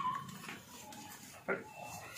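A short animal call about a second and a half in, with a brief high squeak right at the start.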